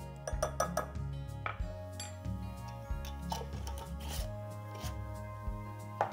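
Soft background music with several light clinks of a measuring spoon against a glass jar and glass bowl as ground spice is scooped and tipped in, most of them in the first half.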